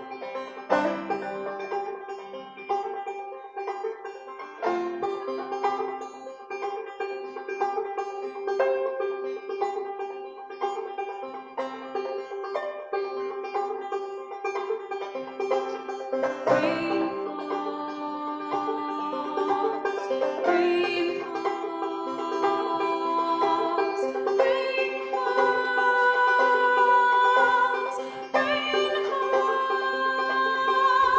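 Banjo played solo, picked notes ringing over a held low note, growing louder and climbing to higher notes in the second half.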